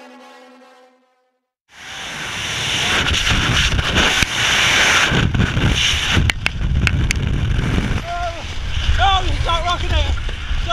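Music fades out into a moment of silence, then loud wind rushes over a helmet camera's microphone during a tandem skydive as the parachute deploys, with a few sharp snaps about six to seven seconds in. Near the end a voice calls out over the wind.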